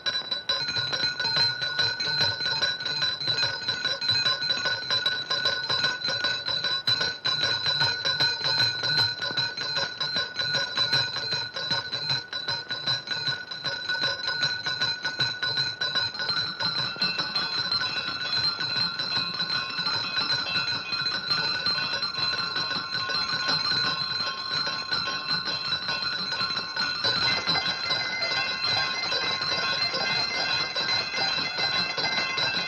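Bells ringing continuously in a rapid, jangling peal, with another bell tone joining near the end.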